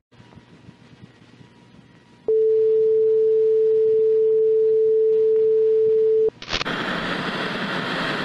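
A steady single-pitch test-card tone, as once broadcast with a TV test pattern, starts about two seconds in, holds for about four seconds and cuts off abruptly. It is followed by loud, hissing TV static.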